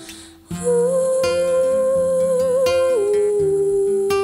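A woman sings a long held note over a fingerpicked nylon-string classical guitar. The note comes in about half a second in, after a brief lull, and steps down to a lower note about three seconds in.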